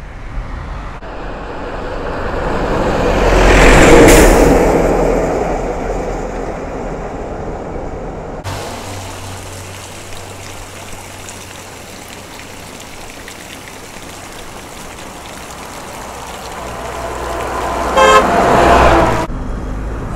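A road vehicle passes close by, swelling to its loudest about four seconds in and then fading. Water then pours steadily from spout pipes into a stone channel. Near the end a bus approaches and its horn sounds for about a second.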